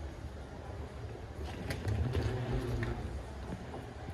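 Wheeled suitcase rolling across a hard terminal floor: a steady low rumble that swells for a second or so in the middle, with a few light clicks and knocks.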